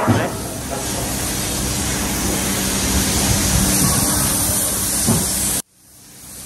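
Paint spray gun hissing steadily as it sprays red paint onto a brake caliper, with a steady low hum underneath; the hiss stops abruptly near the end.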